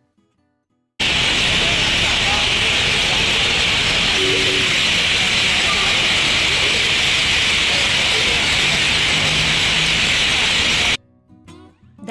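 A loud, dense chorus of many birds roosting in trees at dusk: a steady massed chatter and trilling, starting abruptly about a second in and cutting off about a second before the end.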